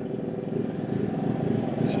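Jackhammer running steadily, a rapid continuous hammering.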